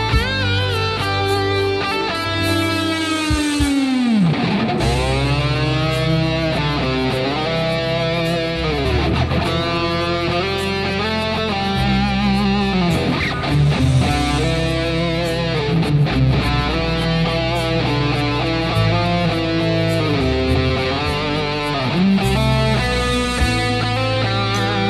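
Electric guitar playing a slow, singing instrumental lead melody over a backing track with bass, with wide vibrato and repeated tremolo-bar dips. About three seconds in, a held note is dived down deep with the bar and brought back up.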